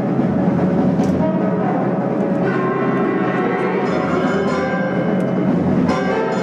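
School concert band playing sustained chords, with repeated low timpani strokes underneath and a few short percussion hits.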